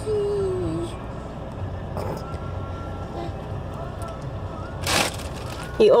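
Low steady background hum inside a parked car, after a drawn-out spoken word fades in the first second. A short rush of noise comes about five seconds in.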